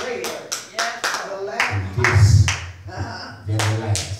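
Hand claps, a series of sharp, uneven claps about two or three a second, over a man's voice in a small, echoing room.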